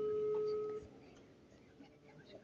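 Smartphone speakerphone playing a telephone line tone: one steady, low beep about a second long while a call is being placed, then quiet.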